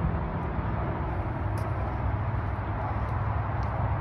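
Steady low rumble and hiss of vehicle traffic, with a constant low hum and a few faint ticks.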